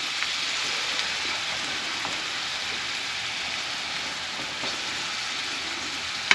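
Onions and sliced jalapeños sizzling steadily in a frying pan over a gas burner.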